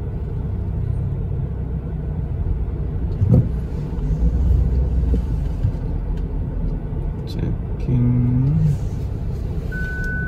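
Steady low rumble of a car creeping along in slow traffic, heard from inside the cabin. A sharp knock comes about three seconds in, and a short low hum near the end.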